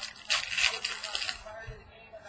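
Contenders football trading-card pack wrapper crinkling and tearing in the hands as the pack is opened, a dense crackle lasting about a second.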